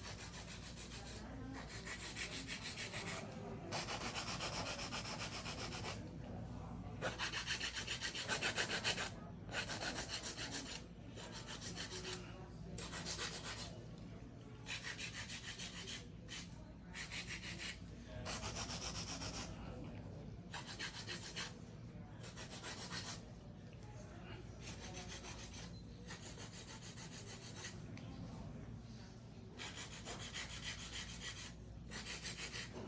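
A hand nail file filing acrylic nail extensions in bursts of fast back-and-forth strokes, each burst lasting a second or two with short pauses between.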